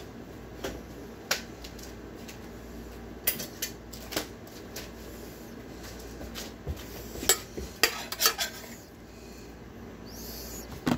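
Metal pots, pans and utensils clinking and knocking in scattered sharp strikes, with a quicker run of clacks about three-quarters of the way through.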